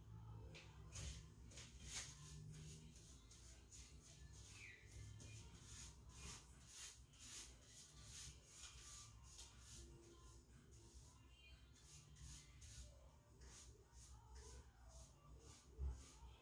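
Near silence with faint, short, scratchy strokes, a few a second, of a paintbrush laying paint onto a doorway's trim.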